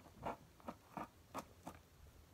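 A fingernail slitting the packing tape along the edge of a cardboard box: a few short, faint scratches.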